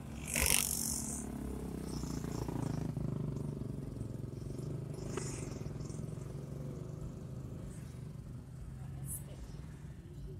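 Steady low drone of a Timor sedan's engine and tyres heard from inside the cabin while it drives slowly in traffic. A short, loud hiss-like burst comes about half a second in.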